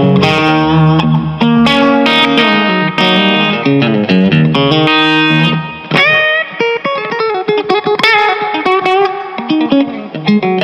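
Electric guitar played through a Longhorn Amps El Capitan, a Dumble Steel String Singer-style tube amp, with a Warm Audio Klon-style overdrive pedal engaged. Held chords and notes give way to string bends about six seconds in and notes with vibrato near the end.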